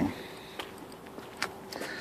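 Low outdoor background noise with two faint footsteps about a second apart, as a person walks on pavement.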